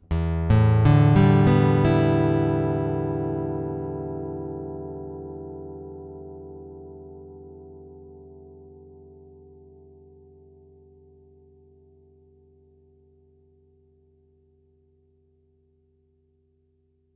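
Electroacoustic guitar's six open strings picked one after another over about two seconds, heard through its built-in piezo pickup, then left to ring and fade away completely over about thirteen seconds. The guitar has no O-Port cone fitted in its soundhole.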